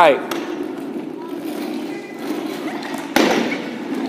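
Plastic scooter boards rolling on a hardwood gym floor, their casters making a steady rumble that echoes in the hall. A single sharp knock about three seconds in rings briefly in the room.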